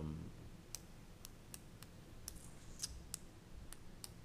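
Light, sharp clicks, about eight of them spaced irregularly over three seconds, against quiet room tone.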